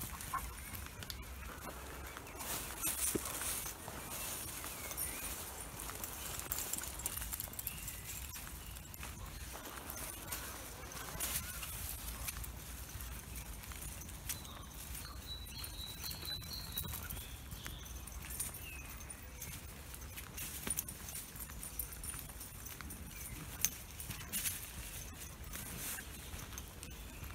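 Footsteps and scuffing on a dirt woodland path from a walker and two dogs on leads, with clicks and rustle from a hand-held phone. A brief high chirp comes about halfway through.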